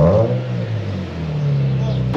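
Nissan 370Z's V6 engine revved once at the start, the revs sweeping back down within about half a second and then running steadily with a slight rise near the end.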